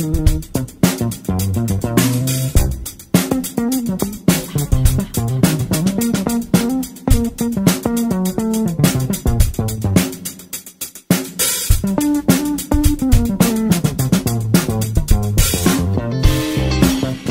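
Instrumental funk groove from a live band: electric bass line, electric guitar, drum kit and keyboard, with no vocals. The groove thins into a short break about ten seconds in, then comes back in full.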